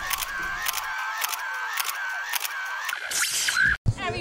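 Title-card sound effect of camera shutter clicks, about three a second, over a repeating warbling electronic tone. It ends in a short hiss and a sudden cut.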